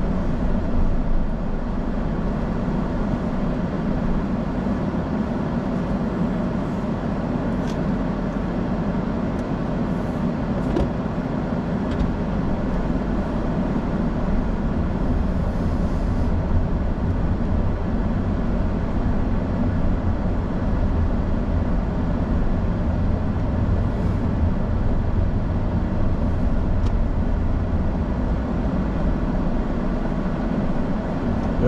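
Car driving, heard from inside the cabin: a steady low rumble of engine and tyre noise with a few faint clicks.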